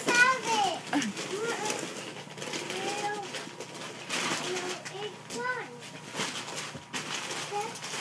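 A toddler's voice babbling and making short high-pitched sounds, with wrapping paper rustling now and then.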